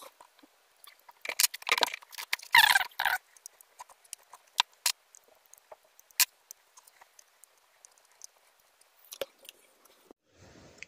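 Protective plastic film being prised up with a folding knife's tip and peeled off a rugged smartphone: scattered small scratches and clicks, with two louder crackling peels in the first three seconds.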